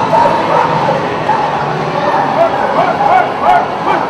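Pit bull yipping and whining in short high calls, several a second, over a background of voices.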